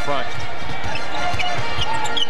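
Basketball dribbled on a hardwood arena court, a run of short thumps a few tenths of a second apart, under steady arena background noise.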